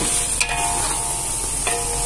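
Marinated chicken and chopped tomatoes sizzling as they fry in hot oil in a metal pot, stirred with a flat spatula. The spatula scrapes against the pot twice, about half a second in and near the end.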